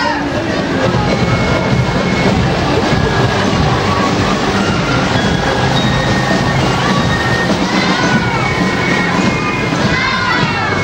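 Carnival parade street sound: music playing amid crowd voices and shouts, with a steady low hum underneath.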